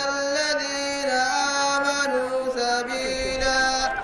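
A single voice chanting an Islamic devotional melody unaccompanied, in long held notes that glide slowly up and down in pitch.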